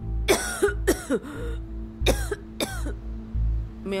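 A woman coughing, two pairs of coughs, over background music with a steady low beat. The coughs come from someone still recovering from COVID-19 pneumonia.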